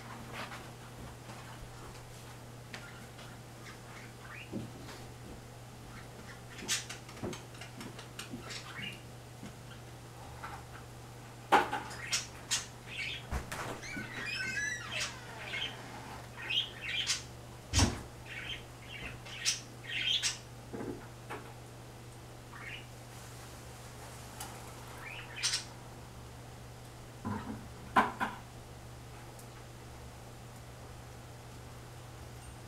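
Scattered bird chirps and squawks, some with quick pitch glides, over a steady low hum, broken by a few sharp knocks.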